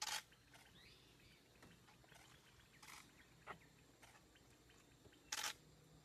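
Camera shutters clicking in short bursts over a quiet background: one right at the start, one about three seconds in, a softer click just after, and a longer loud burst near the end. A faint bird call is heard about a second in.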